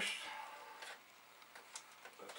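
A short louder sound at the very start, then an Amiga floppy drive clicking faintly, about once a second, as the machine boots with a disk left in the drive.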